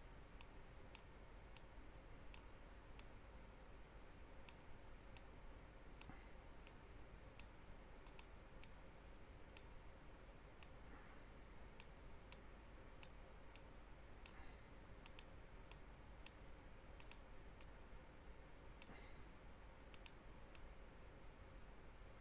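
Faint, irregular clicks of a computer mouse button, one to a few a second and sometimes in quick pairs, over faint steady room noise.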